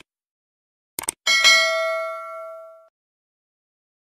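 A quick mouse-click sound effect, a double click about a second in, then a bright multi-tone bell chime that rings and fades over about a second and a half. This is the stock click-and-ding effect of a subscribe-button and notification-bell animation.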